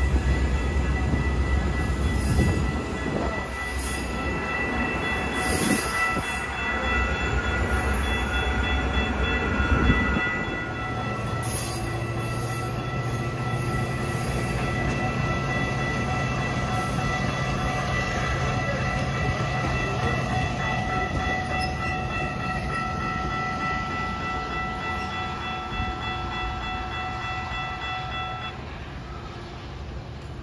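Metra bilevel commuter train pulling out along the platform. A heavy low rumble lasts about ten seconds, then a lighter rumble follows, with steady high-pitched ringing tones over most of it. The sound fades as the train draws away near the end.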